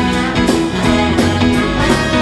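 Live band playing an instrumental horn passage: trumpet and saxophone over drums, bass and guitar, with regular drum strokes through the passage.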